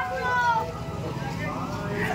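Indistinct voices of people talking and calling out, over a steady low rumble of street traffic or an idling engine.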